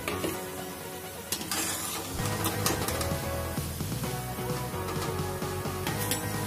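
Hot oil sizzling as sattu-stuffed litti deep-fry in a kadhai, heard under background music whose bass comes in about two seconds in.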